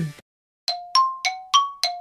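A struck bell-like chime sounding a quick series of notes that alternate between a lower and a higher pitch, about three strikes a second, each ringing briefly and dying away. It follows a sudden dead silence, as an edited-in sound effect.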